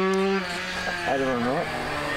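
A motor running at a steady pitch. It drops in level about half a second in and carries on more quietly.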